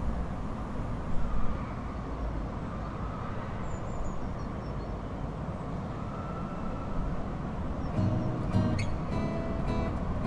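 A steady low outdoor rumble, with background music coming in about eight seconds in.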